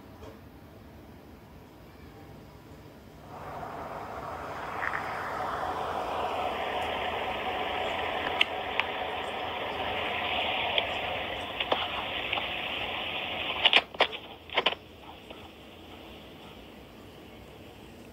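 A voice-recorder app's recording played back through a phone's speaker: a steady hiss of amplified room noise that comes in about three seconds in and lasts about ten seconds, followed by a few sharp clicks. The owner takes it for a paranormal recording with a whisper in it.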